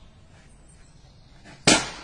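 A single sharp, loud bang about 1.7 seconds in, dying away quickly, after a stretch of low outdoor background.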